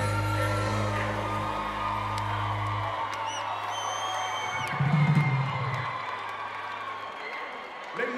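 Live band on stage holding a low sustained bass note that cuts off about three seconds in, over a cheering crowd. Whistles from the audience follow, with a deep hit about five seconds in, and the cheering carries on.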